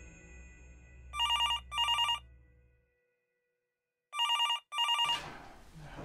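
Telephone ringing: two double rings, each a quick pair of trilling bursts, about three seconds apart. A fading tail of music is heard before the first ring.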